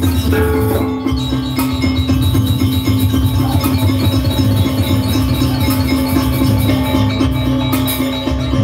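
Gamelan ensemble playing the accompaniment for a Rangda dance: metallophones and drum struck in a dense, quick, steady rhythm over sustained ringing tones.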